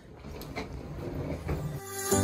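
Rolling suitcase wheels over a floor: a low rattling rumble with a few knocks. Music starts suddenly near the end.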